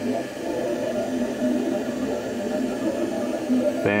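Ultimaker 2 3D printer running a print: its stepper motors whir in short tones that change pitch every fraction of a second as the print head moves across the bed, over a steady fan hiss.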